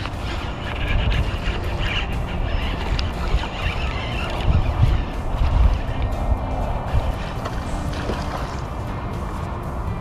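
Background music with a steady, even texture, over low, irregular rumbling from wind on the microphone.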